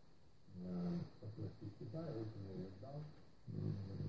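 A man's voice, faint and muffled, coming from a TV's speakers as a recorded video plays back.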